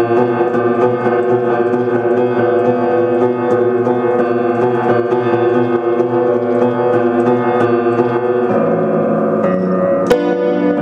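Russian upright piano played in an improvised original piece built around G: a dense run of notes and chords over held, ringing tones, with the bass changing about eight and a half seconds in.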